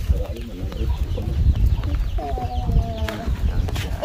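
Chickens clucking, with one drawn-out call about two seconds in, over a low steady rumble and a few faint clicks.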